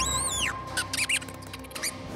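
An animated fire ferret squeaking: one long high rising-and-falling chirp at the start, then a few shorter chirps. Underneath, a held note of background music fades away.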